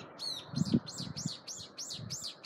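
A songbird singing a rapid run of high notes, each sliding downward, about four or five a second.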